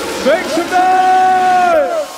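A voice in the electronic dance mix holds one long high note, sliding up into it and falling away near the end. The bass and beat have dropped out under it.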